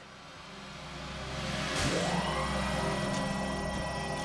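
Electronic title-sequence music swelling up from quiet, with a whoosh about two seconds in, then a sustained synth texture.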